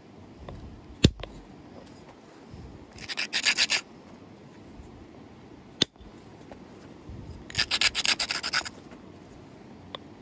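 Edge of a stone fishtail-point preform being ground in two bursts of quick scraping strokes, about three seconds and seven and a half seconds in, preparing the platforms for flaking. Two sharp single knocks come about a second in and just before six seconds, the louder first one, from antler tools striking the stone.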